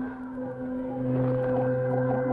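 Background film score of sustained held notes: a steady drone, joined by a higher note about half a second in and a lower one about a second in.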